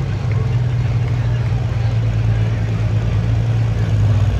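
Diesel pulling truck's engine running steadily at low speed, a continuous low drone, as it sits at the line before launching down the track.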